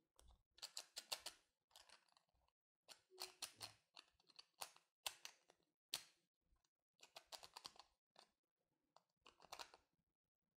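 Faint clicks and small scrapes of hard plastic 3D jigsaw-puzzle pieces being worked loose and slid apart by hand. They come in short clusters every second or two.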